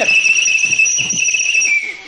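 A loud, shrill whistle blown through the fingers, held as one steady high note that dips slightly in pitch just before it stops near the end.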